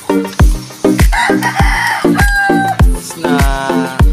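Background music with a steady beat, with a rooster crowing over it from about a second in.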